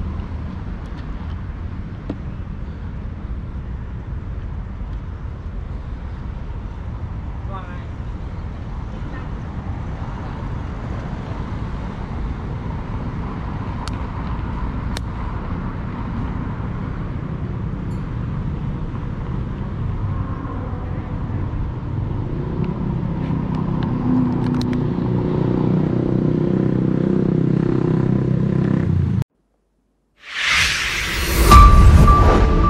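City road traffic heard while walking: a steady low rumble of passing cars. A louder engine hum builds over the last several seconds, then the sound cuts off abruptly just before the end.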